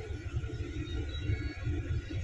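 Low, steady rumble inside a double-decker bus's upper deck while the bus stands idling at a junction.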